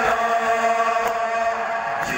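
A crowd of men chanting a Shia nawha lament about Karbala together, holding long sung notes, with a slap of chest-beating (matam) about a second in.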